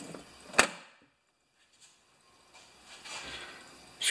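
Steel tool chest shut with one sharp clack about half a second in, followed later by a faint rustle of handling.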